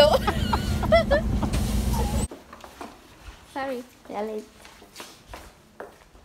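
Bus engine's steady low drone heard from inside the bus, with voices over it; it cuts off abruptly a little over two seconds in. After that, a quiet room with a few short bits of a voice.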